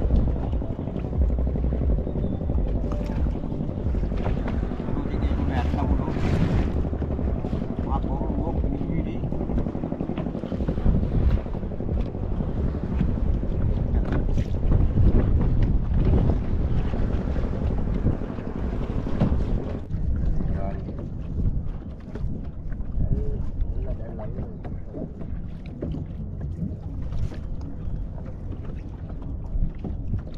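Wind rumbling on the microphone over choppy water washing against a small fishing boat's hull, a steady low noise that eases somewhat in the last third.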